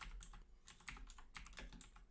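Faint computer keyboard typing: a quick run of separate keystrokes as a command is typed in.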